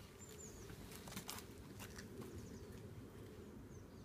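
Quiet outdoor background with a few brief, high bird chirps, a short run about half a second in and another near the end, and a few light clicks about a second in.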